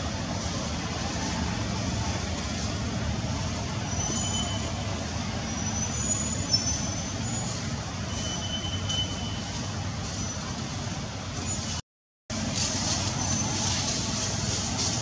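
Steady outdoor background noise with a low rumble, and a few brief, thin high-pitched chirps over it; the sound cuts out completely for about half a second near the end.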